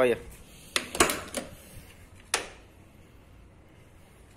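Car door being opened on a 1993 Chevrolet Chevette: several sharp clicks and clunks of the door handle and latch within the first two and a half seconds, then quiet.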